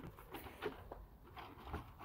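Faint, scattered rustles and light taps from handling a cardboard box and the foam-wrapped plastic wheel trims packed inside it, about four small sounds in all.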